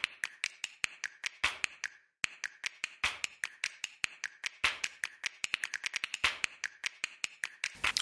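Background music made only of sharp, dry clicks, like finger snaps, about six a second, with a stronger click roughly every one and a half seconds and a short break about two seconds in.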